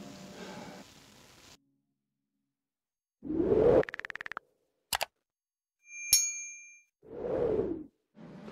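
Subscribe-button animation sound effects: a whoosh about three seconds in, a quick run of clicks, a single mouse click, a bright bell ding, then another whoosh near the end. The tail of background music fades out at the start, followed by a stretch of dead silence.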